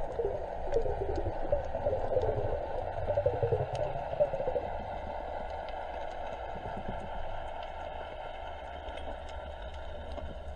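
Underwater sound picked up through a diving camera's housing as the diver swims: a low rumble of moving water, with wavering gurgles over the first four or five seconds that then settle into a steadier wash, and scattered faint clicks.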